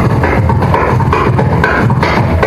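Carnatic concert music: electric mandolin melody over a dense run of rhythmic drum strokes with deep bass thumps.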